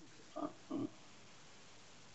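A man's voice making two short hesitation syllables, "uh", about half a second in, over a faint steady hiss.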